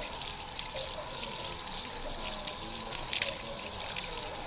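Water running steadily from an outdoor standpipe tap and splashing onto wet ground as spring onions are rinsed under the stream by gloved hands.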